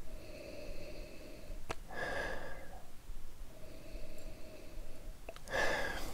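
A person breathing slowly in and out through the nose while nosing a glass of whisky. There are breathy swells about every two seconds, the loudest near the end, and two faint clicks.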